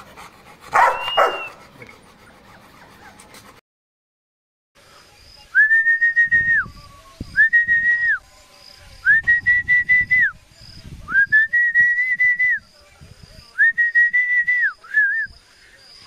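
A person whistling a run of long, level high notes, each about a second long and repeated about every two seconds, to Rottweiler puppies, with low rustling beneath. A short voice-like sound comes about a second in.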